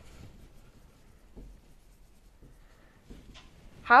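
Dry-erase marker writing on a whiteboard: faint scratchy strokes in the first half-second or so, then near quiet. A woman's voice starts right at the end.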